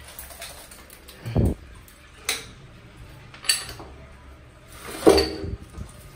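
Heavy aluminium fuel tank being turned over by hand on a tiled floor: a few metal knocks and thumps, the loudest about five seconds in.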